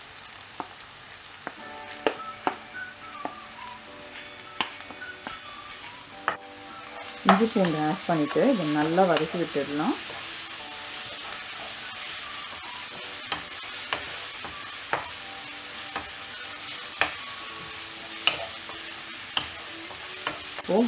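Chopped onions sizzling in oil in a non-stick pan while a wooden spatula stirs them, with scattered knocks of the spatula against the pan. The sizzle grows louder about seven seconds in.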